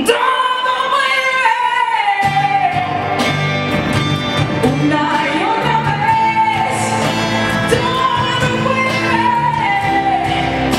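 Live acoustic band performance: a woman's lead vocal sung over acoustic guitar. About two seconds in, the bass and percussion come in under her.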